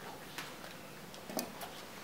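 A few faint, short clicks and light knocks in a quiet room, the loudest about halfway through.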